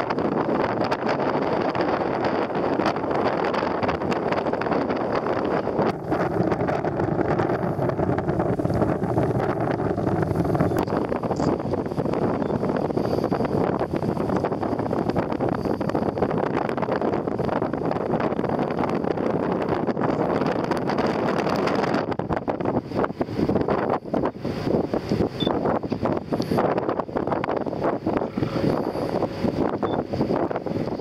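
Wind buffeting the microphone over the steady running noise of a boat under way on the water. The wind turns gusty and uneven over the last several seconds.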